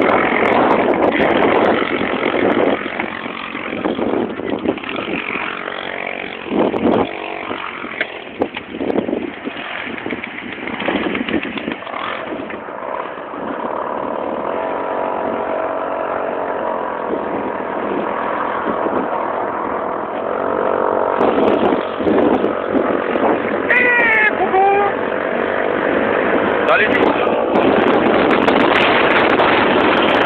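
A small moped engine running, holding a steady pitch for long stretches, with people's voices over it.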